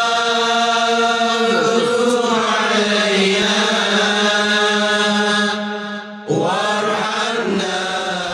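Intro music: a chanted vocal line of long, held notes over a steady low drone. It dips briefly about six seconds in, then a new phrase begins.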